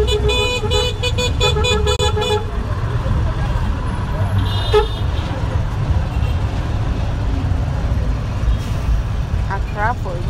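Motor tricycle taxi in motion, heard from the passenger seat: a steady low engine and road rumble. For the first two seconds a rapid pulsing tone sounds over it, and a brief horn toot comes about five seconds in.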